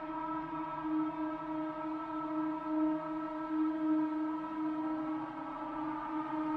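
Sustained electronic drone from the film's score: a held chord of steady tones with gentle swells.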